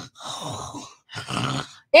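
A woman's breathy, wordless vocal sounds of exasperation, three in quick succession with short gaps between them, showing her boredom with a long rant.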